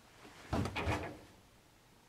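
A dry towel tossed into a clothes dryer's drum, landing with two dull thumps about half a second in.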